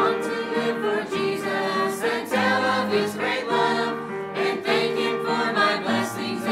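Church choir singing a hymn, holding each note and moving to the next about once a second.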